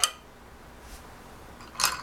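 A wooden spindle clacking against other wooden spindles as it is dropped into a small wooden box, one short clatter near the end; before that, quiet room tone.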